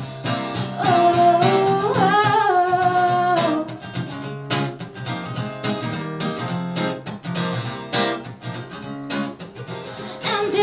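A woman's voice holds a sliding, wordless sung line over a strummed acoustic guitar for the first few seconds, then the acoustic guitar strums on alone.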